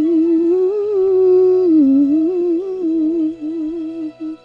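A woman's wordless, hummed vocal melody with vibrato, sung close into a microphone over a soft backing track; the line glides up and down and breaks into short notes near the end.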